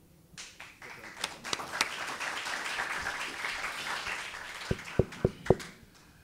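An audience in a hall applauding, the clapping starting about half a second in and dying away near the end. A few sharp knocks near the end are louder than the clapping.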